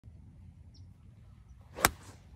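Mid iron swung at a golf ball on fairway turf: a short rising swish of the club, then one sharp crack of impact near the end as the club strikes the ball and takes a divot.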